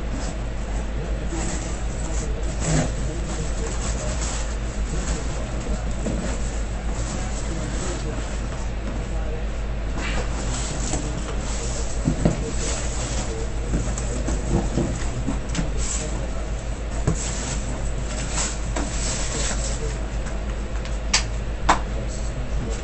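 Cardboard shipping box being handled and worked open: irregular scraping and rustling of the cardboard, with a few sharp clicks near the end, over a steady low hum.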